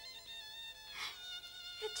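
Background music with several high notes held steady under a pause in a woman's dialogue. There is a short breathy sound about halfway, and a spoken word starts near the end.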